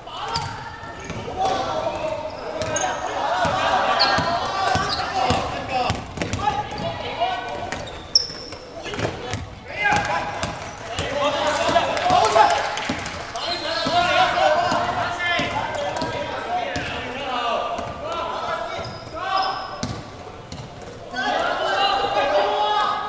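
A basketball bouncing and thudding on a hardwood court during play, with players' voices calling out throughout, all echoing in a large sports hall.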